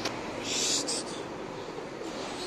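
Feral pigeons cooing over a steady traffic hum, with a short flurry of pigeon wingbeats about half a second in.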